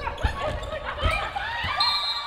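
Indoor volleyball play: the ball is struck hard at the net and hits the court, with short squeaks and players' shouts echoing in the hall.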